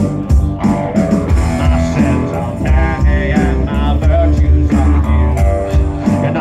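Live rock band playing: electric guitar over upright bass and electronic drums, a steady full-band groove.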